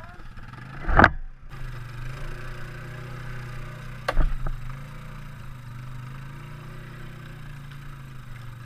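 ATV engine running steadily at low trail speed while towing another quad, with two sharp knocks from the machines jolting over the rough trail, about a second in and again about four seconds in.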